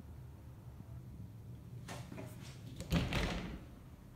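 A door being handled: a few sharp clicks from about two seconds in, then a louder rush of noise about three seconds in that dies away within half a second.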